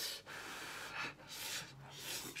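A person slurping glass noodles (vermicelli) from a bamboo-tube bowl, with about two long, hissing pulls of air and noodles.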